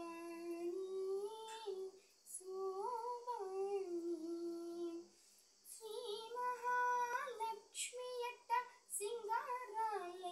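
A young girl singing unaccompanied, holding long notes that slide between pitches in three phrases with short breaths between them; the last phrase moves faster, with quick ornamental turns.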